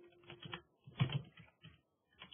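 Computer keyboard being typed on: a quick, uneven string of keystrokes with short pauses between them, as a terminal command is entered.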